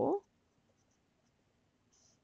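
Pen writing on paper: a few faint, short strokes. The first fraction of a second is the end of a spoken word.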